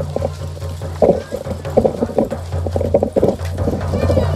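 Matachines dancers stamping in their costumes: a run of irregular, clip-clop-like knocks and clacks over a steady low hum.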